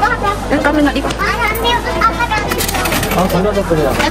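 People talking back and forth, over a steady low background hum.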